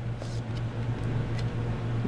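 Steady low hum with a few faint, scattered clicks from Pokémon trading cards being handled and swapped in the hands.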